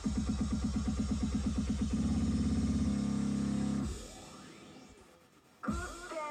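Live electronic rock band ending a song: a pulsing synth-bass beat speeds up into a fast roll, holds a low note and stops about four seconds in, then fades away. Near the end the crowd breaks into loud cheering.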